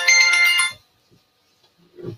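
Mobile phone ringtone: a bright melody of quick stepped notes that cuts off abruptly under a second in.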